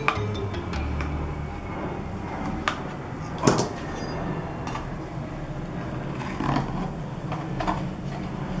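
A knife and a plastic-handled spatula clicking and scraping against aluminium loaf pans as a firm, set gel is cut and lifted out: several separate sharp clicks, the loudest about three and a half seconds in. Soft background music plays underneath.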